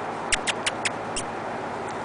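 Five quick, sharp kissing sounds made with the lips to call a dog, in a fast run within the first second or so.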